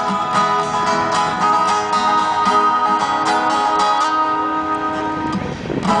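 Live band playing an instrumental passage of a country-pop song: acoustic guitars strumming over sustained chords and held notes, with no singing until a woman's voice comes back in at the very end.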